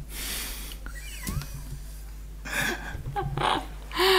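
Quiet, stifled laughter: a long breathy exhale at the start, a few faint squeaky sounds, then two short breathy bursts of laughter near the end.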